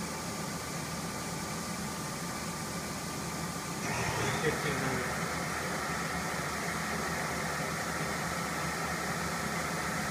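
Vertical machining center's spindle running with a steady machine hum that steps up louder and fuller about four seconds in, as the spindle speed is raised.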